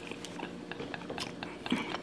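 A person chewing seafood close to the microphone, with scattered small wet clicks and smacks.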